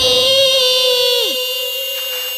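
A little girl's long, high-pitched scream held on one steady note, loud and unbroken. A second pitched line slides down and drops away a little after a second in.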